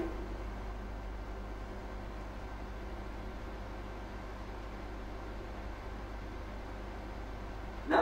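Steady low hum with a faint even hiss: room tone with no distinct event.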